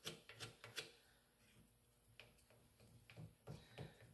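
Faint, scattered small clicks and taps of a wooden popsicle stick pressing epoxy down into the fine cracks of a wooden shovel handle. The clicks come in a few loose clusters over an otherwise near-silent background.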